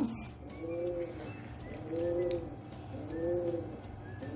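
A dove cooing: three soft, low coos about a second apart.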